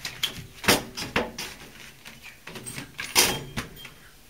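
A pleated air filter being pushed into the sheet-metal filter slot of an air handler. There are several sharp knocks and scrapes of its frame against the metal, the loudest under a second in and again about three seconds in.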